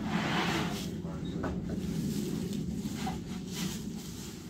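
Poplar board sliding and scraping across the boards in a stack for about a second, followed by a few light wooden knocks as it is handled.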